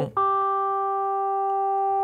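Bitwig Polysynth playing one sustained, resonant synth note, retriggered just after the start. Its filter envelope, set to push the cutoff up seven semitones, puts the emphasis on the third harmonic at the attack, then the emphasis sinks toward the lower harmonics as the filter relaxes.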